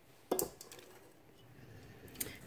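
Silicone spatula stirring and scraping thick cake batter in a stainless steel mixing bowl. It is quiet apart from one brief louder scrape or knock about a third of a second in.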